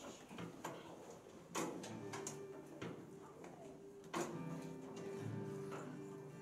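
Acoustic guitar: a few light clicks, then a strummed chord about a second and a half in that rings on, and another strong strum about four seconds in.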